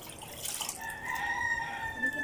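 A rooster crowing once: a long held call that starts a little under a second in and falls slightly at its end. Under it, light splashing of clothes being hand-washed in a basin of water.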